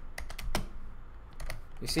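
Typing on a computer keyboard: a few separate, irregular keystrokes as a short line of code is entered.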